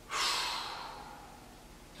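A man's long, deep exhale, a breathy sigh that starts sharply and fades away over about a second and a half.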